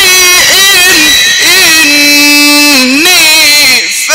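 A man reciting the Quran in the drawn-out melodic mujawwad style through a microphone and loudspeakers, his voice gliding up and down in long ornamented phrases. About halfway through he holds one note steady, then swoops up and falls away, with a short breath just before the end.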